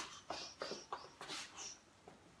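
Faint, short, sharp exhales, about four a second and dying away near the end, from a man throwing punches while shadowboxing in boxing gloves.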